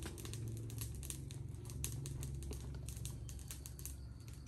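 Light, irregular clicks and rustles of small items being handled in a plastic mesh basket, over a steady low rumble.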